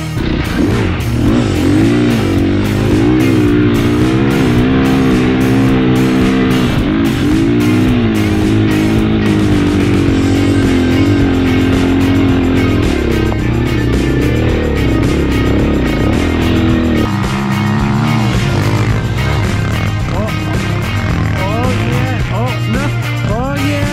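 Dirt bike engine revving up and down repeatedly over background music.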